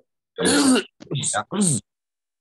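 A person's voice in three short bursts, unclear utterances or a throat-clearing sound rather than plain words.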